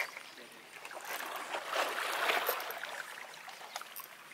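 Small waves washing and lapping against a rocky shoreline, swelling louder in the middle.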